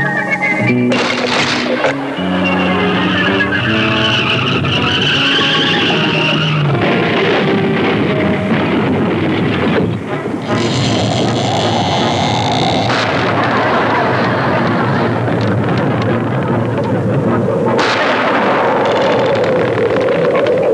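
Soundtrack music with held notes gives way, about seven seconds in, to a car sound effect: a steady rushing drive noise with a high screech a few seconds later.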